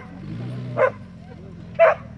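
A dog barks twice, about a second apart, over the Jeep Grand Cherokee WJ's 4.0-litre straight-six engine revving in the background as it climbs a sandy slope.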